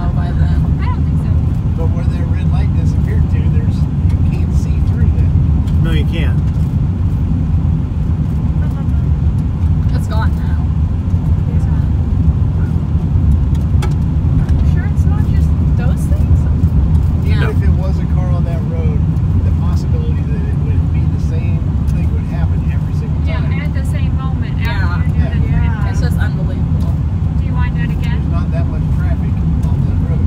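Steady low rumble of a car running, heard from inside its cabin, with faint voices murmuring at times.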